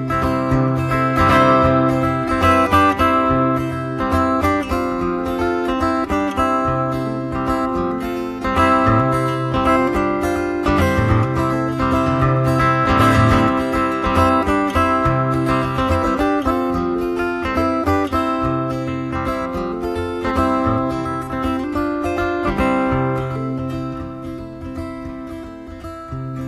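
Acoustic guitar played alone: an instrumental break of picked melody notes over a recurring bass line, with no singing.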